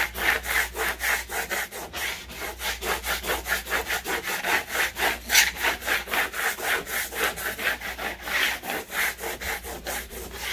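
Plastic squeegee scraping back and forth over a paper-backed vinyl decal sheet on a wooden table, pressing the lettering down so it sticks. The strokes go in a quick, even rhythm of several a second, one a little louder about halfway through.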